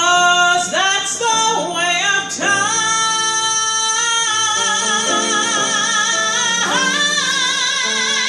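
Woman singing a slow vocal jazz ballad live into a microphone. She glides up into long held notes with wide vibrato, the longest held for about four seconds in the middle, over soft band accompaniment.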